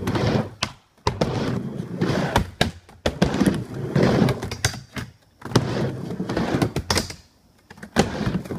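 Skateboard wheels rolling on a plywood mini ramp: a hollow rumble that swells with each pass across the flat and dies away for a moment at the top of each wall, about four passes, with sharp knocks of the board on the wood.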